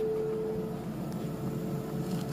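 Player piano rewinding its paper roll: a steady, fluttering whir from the pneumatic drive and the paper spooling back, with a lingering piano tone fading out under it in the first second.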